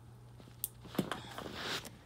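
Light handling noise from loose trading cards and the recording phone being moved about: two soft clicks close together about a third of the way in, then a brief rustle in the second half.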